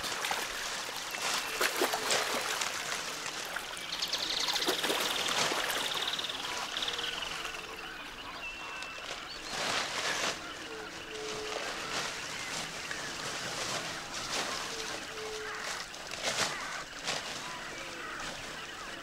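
Water sloshing and branches and leaves rustling and crackling as a jaguar drags a caiman carcass out of the river into dense brush, with short bird calls in the background.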